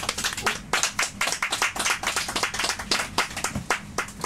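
A small audience clapping at the end of a song, the claps thinning out near the end.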